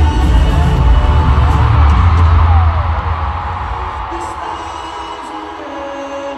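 Live pop concert music played through a stadium sound system and heard from high in the stands. Heavy bass and drums carry the first half, then drop out a little under halfway, leaving quieter held notes.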